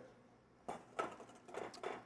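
A few soft, separate clicks of a wire whisk against a stainless steel bowl of egg yolks being whisked, starting after a brief hush.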